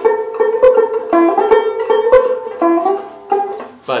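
Four-string Irish tenor banjo picked, a run of bright, ringing notes in quick succession that fades out near the end.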